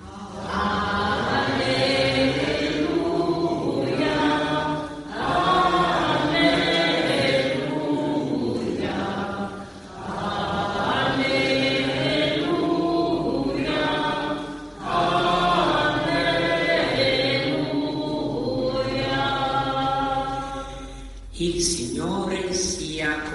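A choir singing a slow liturgical chant in four long phrases, with short breaks between them.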